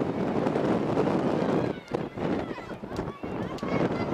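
Steady wind on an outdoor microphone with distant voices calling out across the field. The wind eases for a moment about halfway through, and the faint calls come through more clearly.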